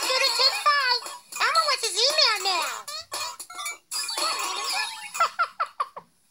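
High-pitched cartoon voices singing a short jingle over backing music, the pitch swooping up and down, played back from a children's TV show through a screen's speaker.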